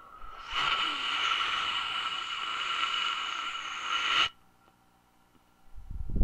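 A steady rushing hiss sound effect starts about half a second in and cuts off suddenly after about four seconds. A low thud follows near the end.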